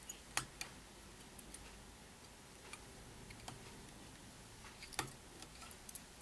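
A few faint, sharp, irregular clicks and taps of a fly-tying whip finisher being picked up and handled at the vise. Two come close together near the start, and the sharpest is about five seconds in.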